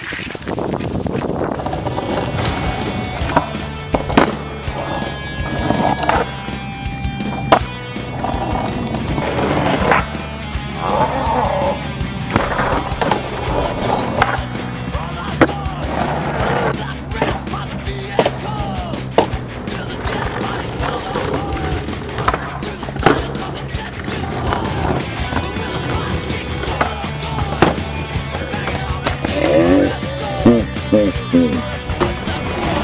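Skateboard wheels rolling on asphalt, with sharp clacks of the board hitting the ground, over background rock music with a steady beat.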